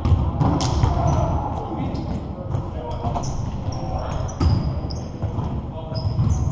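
Basketball bouncing on a hardwood gym floor during play, with sneakers squeaking in short high-pitched chirps and players' voices in the large hall.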